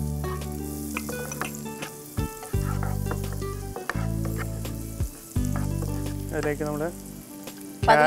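Chopped onion sizzling in melted butter in a nonstick frying pan, with a spatula stirring and scraping across the pan base in short clicks. Background music with held low chords plays underneath.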